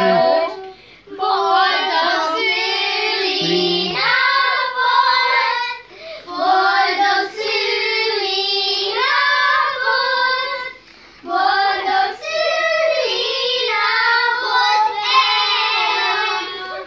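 A group of children singing a song together, phrase after phrase, with short breaks about every five seconds.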